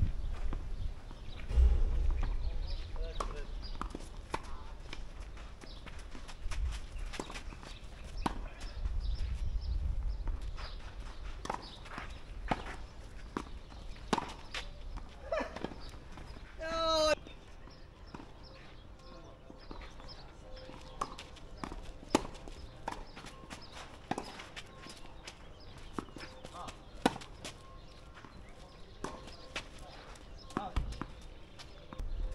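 Tennis played on a clay court: sharp strikes of racket on ball and ball bounces, scattered irregularly, with gusts of wind on the microphone in the first ten seconds. About seventeen seconds in, a player shouts one short call, 'out'.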